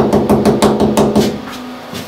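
Rapid light hammer taps, about eight a second, driving a wall plug into a hole drilled in wall tile. The tapping stops about two-thirds of the way in.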